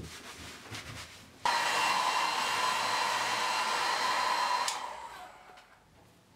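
A towel rubbing hair. Then, about a second and a half in, a hair dryer switches on suddenly and blows with a steady whine for about three seconds. It is switched off and winds down.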